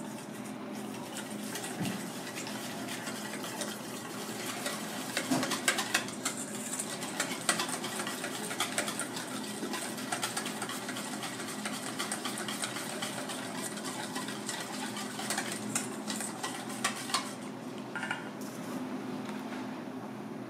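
Wire balloon whisk beating a thick mixture in a stainless-steel bowl: a fast, continuous clinking and rattling of the wires against the metal, busiest in the middle stretch, over a steady low hum.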